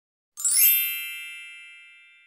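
A bright chime sound effect, struck about half a second in with a brief sparkling shimmer on top, then ringing several clear tones that fade away slowly.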